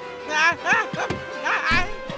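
Three short, high yelps with a wavering pitch, over cartoon background music.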